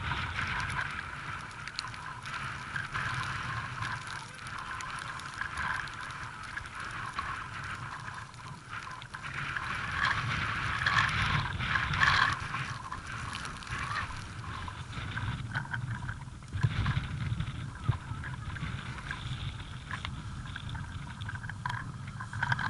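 Gusting wind buffeting the microphone, with a rough low rumble underneath that swells for a moment a few seconds before the end.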